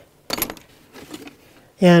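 Clatter of small hard objects being picked up and handled: a short, sharp rattling burst about a third of a second in, then a few lighter knocks.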